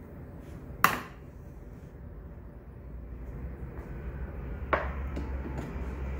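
Electric potter's wheel running with a steady low hum that grows louder about three seconds in, while wet clay is shaped on it. Two sharp knocks stand out, one about a second in and one near five seconds in.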